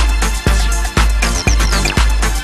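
Electronic dance music: a steady kick drum hits about twice a second under a dense synth bed, with short, high, falling blips over the top.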